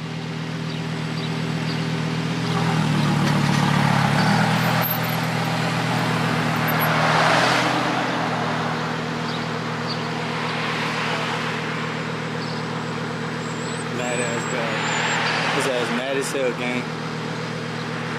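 Lamborghini Huracán's V10 idling steadily while other traffic swells past and fades several times.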